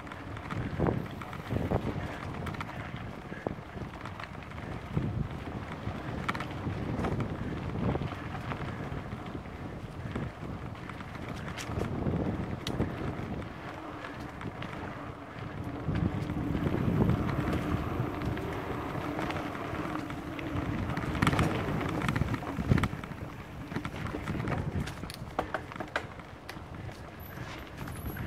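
Mountain bike rolling along a dirt forest trail: wind buffeting the microphone over the rumble of the tyres, with frequent knocks and rattles from the bike over bumps and roots.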